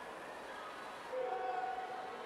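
Crowd and pool noise echoing in an indoor natatorium during a swim race, with a steady held tone joining about halfway through.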